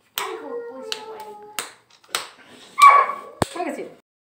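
People's voices in a small room, with several sharp clicks and a short loud high-pitched cry about three seconds in.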